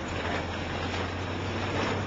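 Volkswagen Jetta driving on a gravel road, heard from inside the cabin: a steady low engine drone under even tyre and road noise, growing a little louder near the end.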